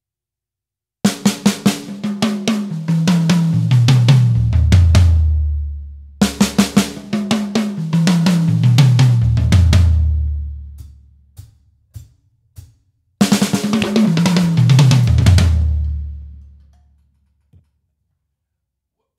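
Pearl Masterworks drum kit: a fast 16th-triplet tom fill played three times, each a rapid run of strokes stepping down from the small high toms to the deepest toms and growing louder as it goes, the last low drum ringing out. A few single strokes fall between the second and third runs.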